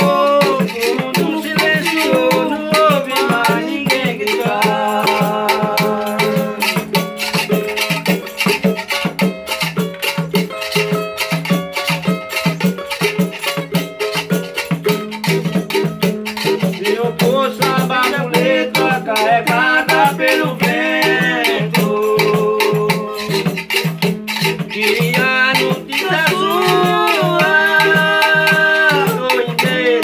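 Live samba from a small group: a small guitar strummed, with tambourines and frame drums shaken and struck in a quick steady rhythm, and men singing over it in several sung lines.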